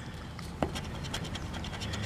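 Scratch-off lottery ticket being scraped with a handheld scratcher tool: a run of short, quiet scratching strokes on the ticket's coating, with one sharper click about half a second in.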